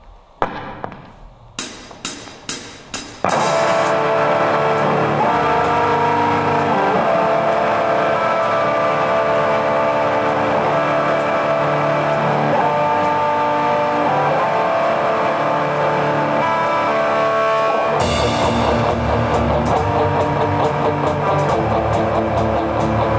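An instrumental rock band of two electric guitars, electric bass and drum kit. A few sharp clicks come in the first three seconds, then the band starts playing loud sustained guitar chords over a steady cymbal beat. Near the end a heavier bass and drum part comes in.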